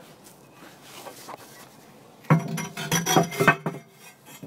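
Ceramic plate setter clinking and knocking against the ceramic fire ring as it is lowered into a Big Green Egg kamado grill. Faint handling noise comes first, then a loud burst of clinks and scrapes about two seconds in that lasts just over a second.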